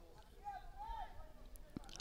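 Faint open-air ambience of an amateur football match, with a distant player's voice calling out on the field about half a second in and a single short knock near the end.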